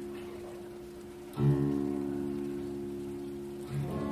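Acoustic guitar played hard: a chord rings out and fades, then a sharply strummed chord about a second and a half in rings on and slowly dies away, with another chord struck near the end.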